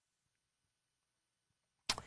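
Very quiet studio room tone with faint traces of chalk writing on a blackboard, then a single short, sharp click near the end.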